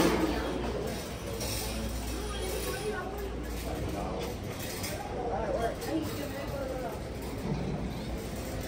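Faint, indistinct talking over a steady low background hum.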